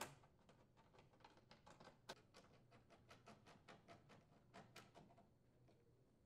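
Very faint, irregular clicks and ticks of a screwdriver turning mounting screws into the range's sheet-metal control bracket, the sharpest about two seconds in, dying away about five seconds in.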